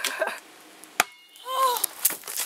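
A person laughing briefly, then a single sharp knock about a second in, followed by a short tone that rises and falls near the end.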